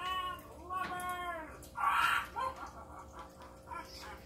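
A high, stretched voice from a talking Halloween prop, two calls that rise and fall in pitch, followed about two seconds in by a short rushing noise.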